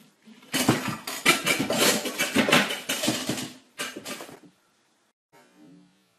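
A loose ceramic toilet pan being moved on its base, rattling and scraping for about three seconds, then a short second rattle.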